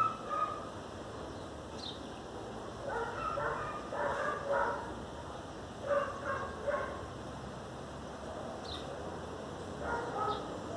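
A dog barking faintly, in two bouts of short barks a few seconds apart.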